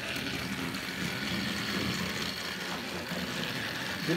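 Battery-powered Thomas & Friends Rebecca toy engine running around plastic track: the steady whir of its small electric motor with the rattle of its wheels on the track.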